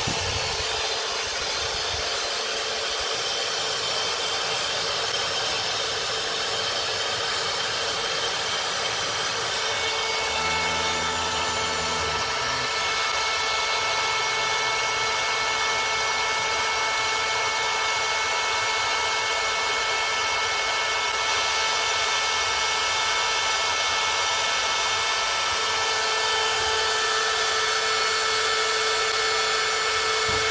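Parkside PALP 20 A1 cordless 20 V air pump running steadily, blowing air into an inflatable paddling pool: an even rush of air with a motor whine, a few steady whine tones coming in about ten seconds in.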